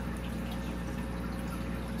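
Steady low hum with faint water sounds from the running aquarium equipment of a fish room.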